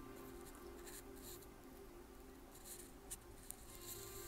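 Faint rustling and scratching of fingers brushing the dry sheet moss and begonia leaves in a pot, with a couple of small ticks about three seconds in, over a low steady hum.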